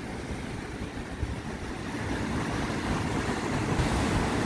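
Beach ambience of wind rumbling on the microphone over waves breaking on the shore, growing slightly louder toward the end.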